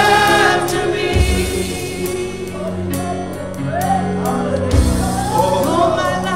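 Live gospel worship music: several voices singing over keyboard and drums, the voices fading back in the middle and returning near the end.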